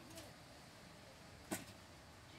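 Near silence with faint background noise, broken by one short, sharp click about one and a half seconds in.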